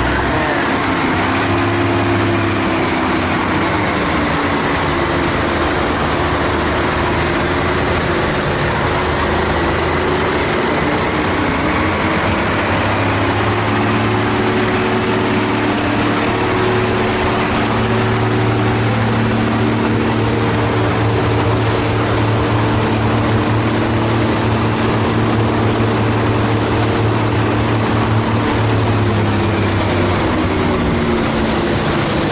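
Concrete mixer truck's diesel engine running steadily, turning the drum while concrete is poured down the chute; its pitch shifts a little now and then.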